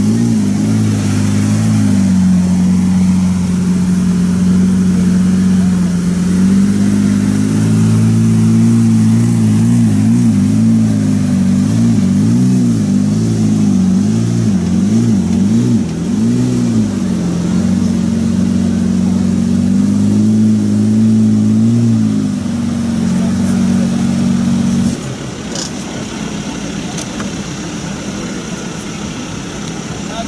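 Lamborghini Reventón's 6.5-litre V12 idling steadily, wavering a little in pitch. It cuts off suddenly about 25 seconds in as the engine is shut down, leaving quieter street noise.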